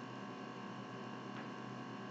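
A pause in speech: faint, steady background hiss with a thin, even hum, the recording's room tone.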